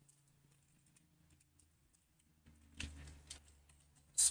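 Faint computer keyboard typing: scattered soft keystrokes, with a few louder ones about three seconds in.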